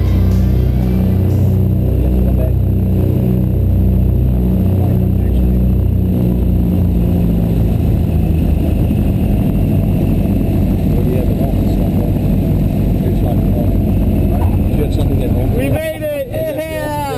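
Twin-propeller light plane's engines running, heard from inside the cabin as a loud, steady drone. Background music fades out over the first half.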